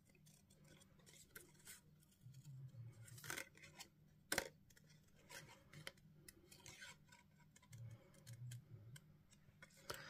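Small craft scissors fussy cutting around a stamped dragonfly in paper: faint, irregular snips, one louder click about four seconds in.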